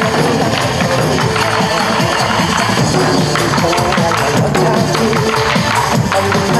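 Buk nanta: several performers beating Korean barrel drums (buk) in time with a loud recorded trot backing track, the drum strokes falling in a steady rhythm over the music.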